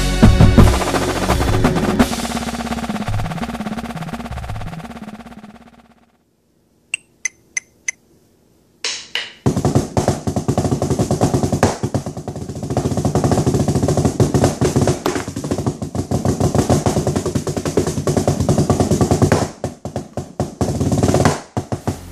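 Intro music fades out, four evenly spaced clicks count off, and then a fast drumline snare lick is played with drumsticks on a practice pad: dense rapid strokes with accents and rolls, breaking into a few separate hits near the end.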